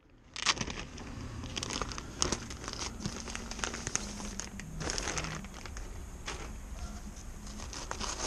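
Clear plastic packaging crinkling as a pair of blackout curtains is handled and slid out of its bag, in many irregular short crackles.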